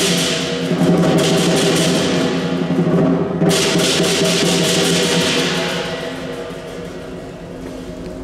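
Lion dance percussion ensemble: a big drum beating fast with crashing cymbals and a ringing gong. The cymbals break off briefly about three and a half seconds in, then resume, and the playing grows quieter near the end.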